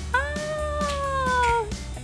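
A high voice holding one long "ooh", about a second and a half, rising slightly at the start and dropping off at the end, over background music.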